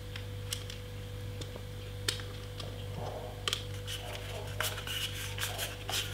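Small irregular plastic clicks and scrapes as the flathead screw cap on the end of a rechargeable hand warmer is twisted and worked loose by hand, over a low steady hum.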